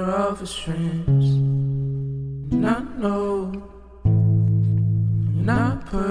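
A slow song: sustained chords struck about a second in and again about four seconds in, each left to ring and fade, with short sung vocal phrases in the gaps between them.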